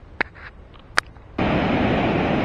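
Two brief clicks over a quiet background, then, about one and a half seconds in, a sudden cut to the loud, steady rush of ocean surf breaking on a beach.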